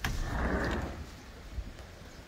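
Heavy rain driven by strong wind, with a gust buffeting the microphone as a rough rumble and hiss during the first second after a sharp knock, then easing to steadier rainfall.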